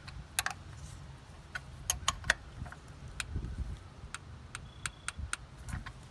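Irregular sharp clicks and light clinks of gloved hands and a small hand tool working on ignition coils and their plastic connectors on top of the engine, over a low steady rumble.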